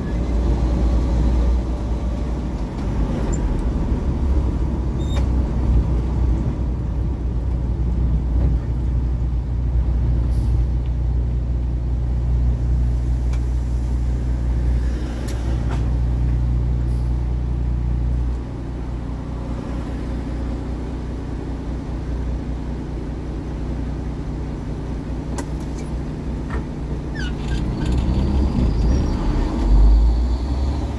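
Tractor-trailer truck's engine running steadily, heard inside the cab as a low drone. The engine note drops a bit past halfway through.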